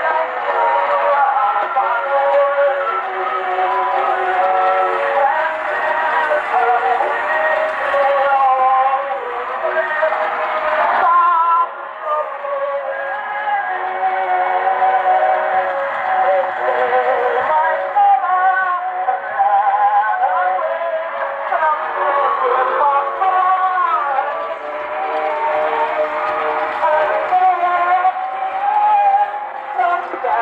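A 1902 Columbia AJ Disc Graphophone playing an early Columbia shellac record acoustically through its horn: a sung recording with a thin, tinny sound that lacks bass and treble. There is surface hiss from the rough, worn disc.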